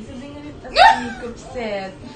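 A woman's short, high-pitched vocal exclamation about a second in, sharply rising then falling in pitch, followed by a quieter, falling vocal sound near the end.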